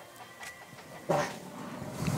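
A man breaking wind: one loud, short, low fart about a second in.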